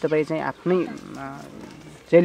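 A woman's voice, short voiced sounds in the first second, then quieter.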